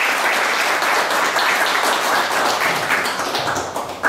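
Audience applauding: dense, steady clapping that tails off slightly near the end.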